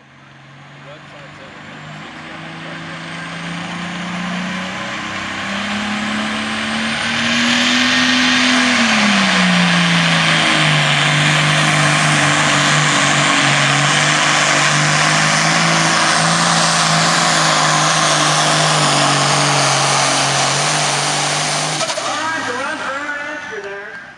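Light Pro Stock John Deere pulling tractor's turbocharged diesel engine at full throttle, dragging a weight-transfer sled. A low engine note sits under a loud exhaust and turbo roar, with a high whine that rises over the first several seconds. The sound builds over about eight seconds and then holds steady, and the engine pitch climbs before dropping about nine to ten seconds in.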